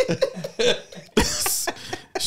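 A man laughing briefly, with a sharp cough about a second in.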